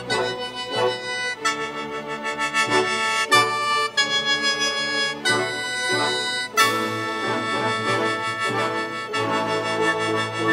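Sheng, the Chinese free-reed mouth organ, playing a reedy melody in chords over a string orchestra's accompaniment, with the music growing fuller about six and a half seconds in.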